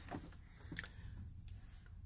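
Quiet handling sounds, a couple of faint clicks, over a steady low hum.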